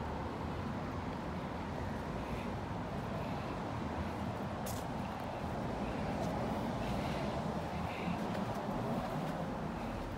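Steady low hum of distant road traffic, with no distinct events.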